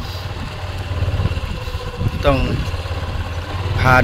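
Motorcycle engine running steadily at low speed, a low even hum.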